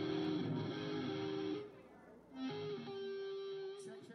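Electric guitar played through the stage PA during a soundcheck: a run of sustained notes, a brief drop in level about halfway, then one long held note near the end.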